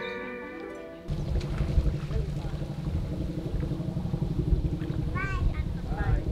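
Slide-guitar music fades out over the first second and cuts to outdoor poolside sound: a steady low rumble of wind on the microphone with faint voices, and a few brief high-pitched calls about five seconds in.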